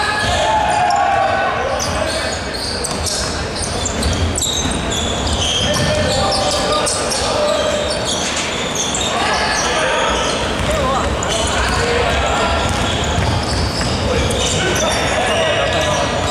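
Indoor basketball game: a ball bouncing on a hardwood court and players' voices calling out, with the reverberation of a large sports hall.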